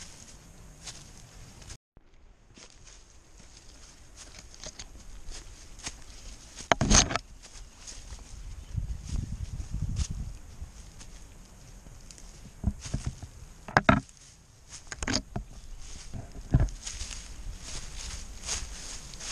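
Footsteps of a hiker on a rocky, leaf-strewn mountain trail, with a few sharp knocks scattered through it, the loudest about seven seconds in and around fourteen seconds. The sound drops out briefly about two seconds in.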